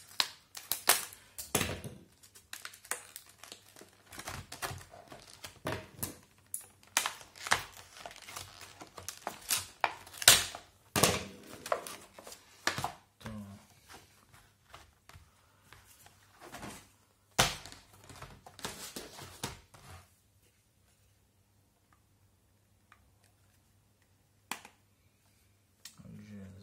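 Scissors cutting through a clear plastic blister pack, then the stiff plastic crinkling, snapping and clicking as a round LED puck light is worked out of it: a dense, irregular run of crackles and snaps for about twenty seconds. After that it goes almost silent, with a single click near the end.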